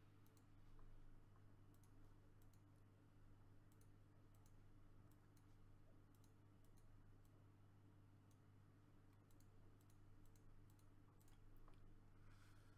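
Faint computer mouse clicks, irregular and well over a dozen, over a steady low hum.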